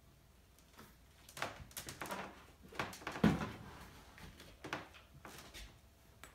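A plastic jug of vegetable glycerin being tipped and poured into a glass measuring cup, with a string of irregular knocks and rustles of handling. The loudest comes about three seconds in, and the sounds die away near the end.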